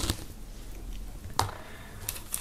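Two light clicks about a second and a half apart as a small pin-back button is handled and set down on a wooden tabletop, with quiet room tone between.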